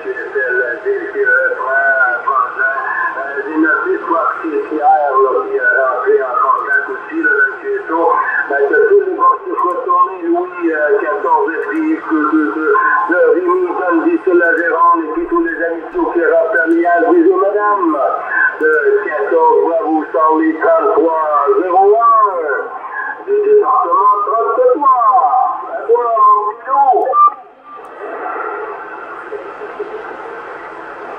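Another station's voice received over CB radio in sideband: thin, band-limited speech over steady hiss. The voice stops about 27 seconds in, leaving only the hiss.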